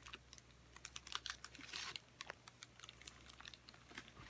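Faint handling noise: scattered light clicks, with a brief rustle a little under two seconds in.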